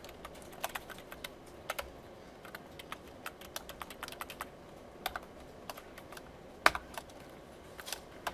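Keystrokes on a computer keyboard: irregular clicks of typing and editing, with one sharper key strike about two-thirds of the way through.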